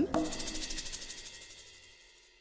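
A rapid clicking rattle with a faint ringing tone, fading away over about two seconds: a sound effect laid over the fade between two comic scenes.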